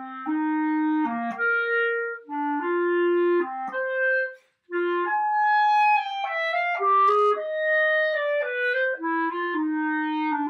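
Selmer Paris Présence B-flat clarinet in grenadilla wood played solo: a melodic line of held and moving notes that leaps between the low and middle registers, with a short breath about four and a half seconds in.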